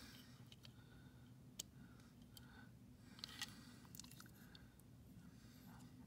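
Near silence with a few faint clicks from a small die-cast toy car being turned over in the hand and its opening hood lifted.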